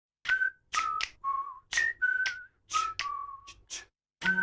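A short intro jingle: a quick run of about eight short whistled notes at changing pitches, each set off by a sharp click or clap.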